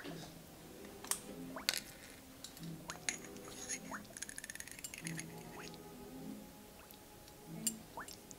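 Soft background music, with a few light clicks and a short run of fine ticks from spice jars and a measuring spoon being handled.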